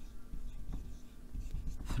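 Marker pen writing a word on a whiteboard and underlining it: a few faint, short strokes of the felt tip on the board.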